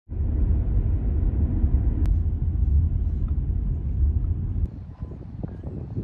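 Outdoor ambience with a steady low rumble that stops abruptly about three-quarters of the way in, leaving quieter outdoor background with a few faint clicks.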